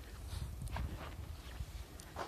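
Wind rumbling on the microphone, with a few short scuffs of footsteps on gritty granite.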